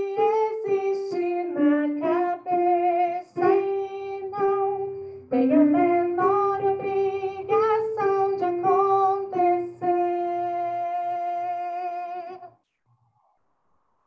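A woman singing a phrase of a choir part alone, unaccompanied, heard over a video call. The melody moves in short notes and ends on one long held note that stops about twelve seconds in.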